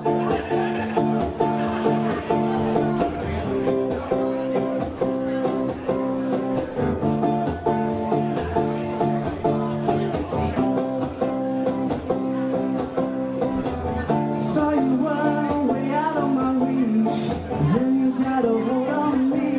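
Acoustic guitar strummed in a steady rhythm, the instrumental opening of a song. A man's singing voice comes in about fourteen seconds in.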